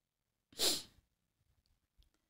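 One short, sharp breath drawn in close to the microphone about half a second in, then quiet.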